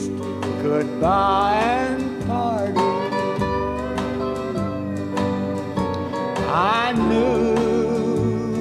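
Dobro played lap-style with a steel bar, taking an instrumental break in a slow country song; it slides up into notes twice, about a second in and again near the end, over steady accompaniment.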